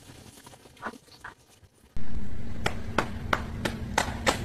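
Faint noise for about two seconds, then a sudden loud start of a steady low drone with sharp hand claps and taps in a quick, even rhythm of about four to five a second, as in a clapping dance routine.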